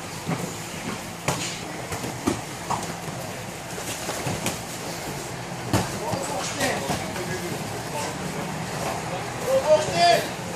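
Martial-arts training noise: irregular thuds and slaps of gloved strikes, feet and bodies on the gym mats, over a constant hubbub of voices.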